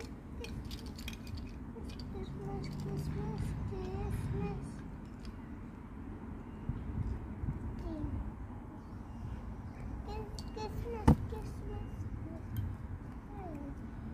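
Small plastic toy figures clicking against each other as two young children handle them, with soft child vocalizing now and then. One louder sharp click near the end.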